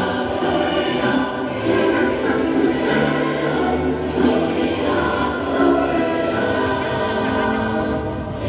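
A choir singing a slow sacred piece, held notes changing every second or so, relayed over outdoor loudspeakers.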